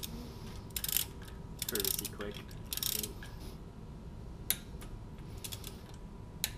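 Ratchet of a torque wrench clicking in three short bursts about a second apart, then a few single clicks, as bolts on an R53 MINI Cooper S cylinder head are tightened to about 28 N·m.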